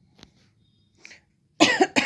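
A person coughing: a short, loud run of coughs starting a little after halfway through, preceded by a few faint ticks.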